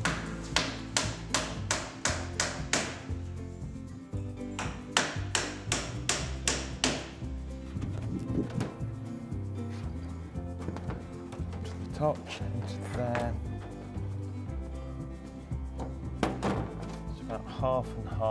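A claw hammer striking nails into a wooden shed window frame: a quick run of about ten blows, then after a short pause about six more, over background music.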